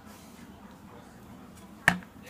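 A single sharp knock near the end, a hard object set down on a wooden tabletop, with a brief ring after it.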